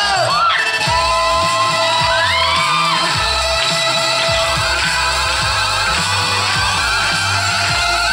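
Live folk-electronic music: a regular low electronic beat under a long held note, with voices whooping in rising and falling glides near the start and again about two seconds in.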